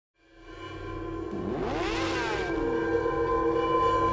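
Intro sound design: a steady, many-toned synthesized drone that fades in from silence, with sweeping tones rising and falling across each other about halfway through, like a whoosh.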